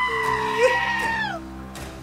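A woman's long, high whining cry, held steady for about a second and then sliding down and breaking off, over background music.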